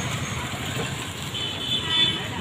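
Street traffic: motorcycles and a scooter running past, with a high, steady tone sounding in the second half, likely from a horn.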